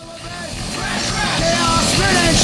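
Punk rock music fading in, growing steadily louder, with shouted vocals over a dense, distorted band sound.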